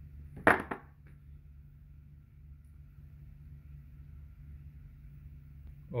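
A single short, sharp tap or clink about half a second in, followed by a faint steady low hum.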